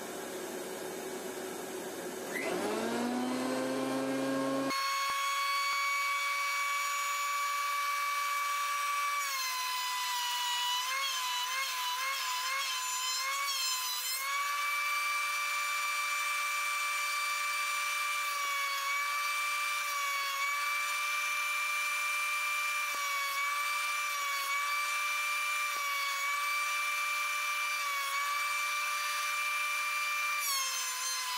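Einhell TC-SP 204 planer-thicknesser's motor and cutter block starting up with a rising whine about two seconds in, then running at speed with a high steady whine. The pitch sags and wobbles for a few seconds in the middle and dips briefly several times after, dropping again near the end as a board is pushed across the jointer table.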